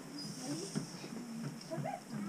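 Quiet, scattered chatter of children and adults in a room, with a short high-pitched rising voice near the end.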